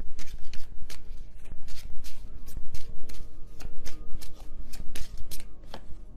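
A deck of tarot cards being shuffled by hand: quick, irregular flicks and slaps of the cards, several a second, easing off near the end.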